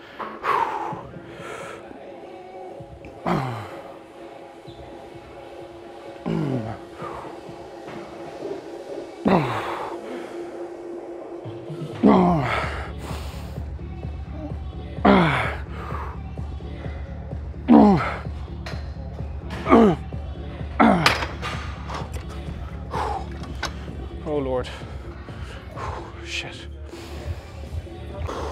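A man's strained grunts of effort, one with each partial rep of a leg extension set taken to failure, each falling sharply in pitch, about every two to three seconds. Background music plays underneath, with a steady bass beat coming in about halfway.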